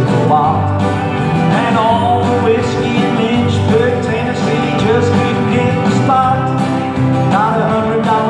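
Country song played live: strummed acoustic guitar over a steady backing, with a man singing into a microphone at times.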